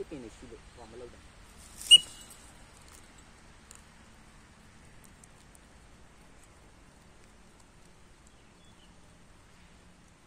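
A voice speaking briefly, then a single sharp, high-pitched chirp about two seconds in, the loudest sound here, followed by quiet with a faint low hum.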